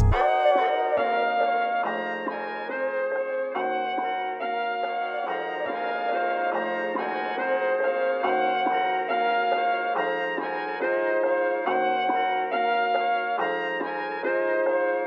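Background music led by brass instruments: held chords that change every second or so, with no drums.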